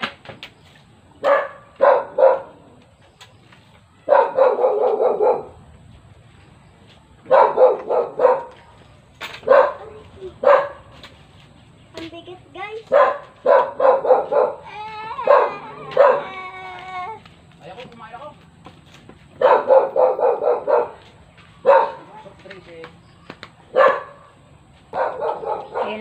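A dog barking in repeated bouts of short, loud barks, with a wavering whine-like call in the middle.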